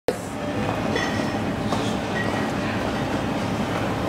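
Steady urban background noise with a low rumble, broken by a few faint clicks and brief high tones; it starts abruptly at the opening.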